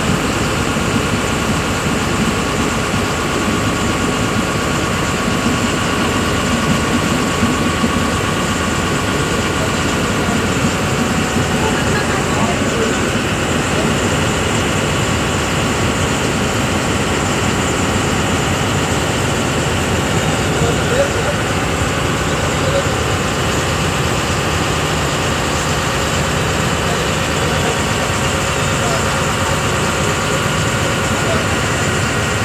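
Ferry boat's engine running steadily while the boat is underway, a loud, even drone with no change in speed.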